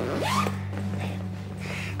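A man's short breathy scoff, with a single "nee", over a steady low drone of underscore music.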